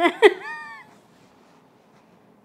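A woman's short, high vocal squeal that rises and then falls in pitch, lasting under a second at the start, then near quiet.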